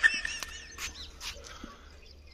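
Animal calls: a few short, high, arching chirps and a brief held high note in the first second, then fainter.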